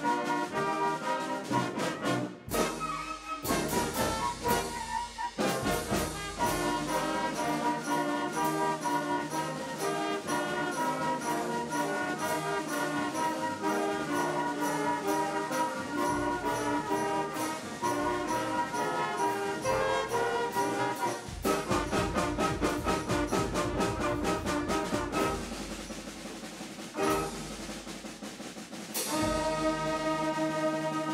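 School concert band playing a piece: brass and woodwinds over percussion that keeps a regular beat. Near the end the band drops to a quieter passage, then comes back in at full strength.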